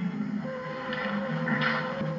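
Film score heard through a television's speaker: quiet, sustained music with low held notes, and a steady higher tone coming in about half a second in.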